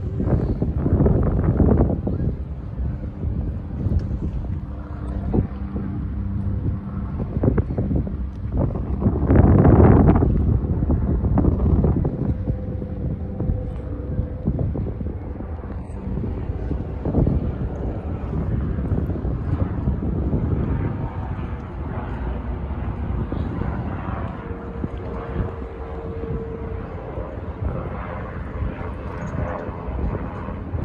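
Wind buffeting a phone microphone outdoors over a steady low rumble; the wind noise swells loudest about ten seconds in.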